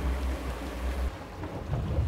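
Boat motors running at low speed with wind on the microphone: a low rumble, strongest for about the first second, then easing to a quieter steady noise.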